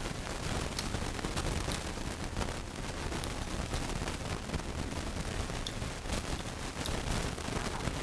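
Chewing of mooncake and salted egg yolk close to the microphone, a steady run of wet mouth clicks and small crackles.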